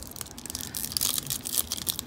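Foil wrapper of a hockey card pack being torn open by hand, crinkling and tearing in a run of quick crackles that are loudest about a second in.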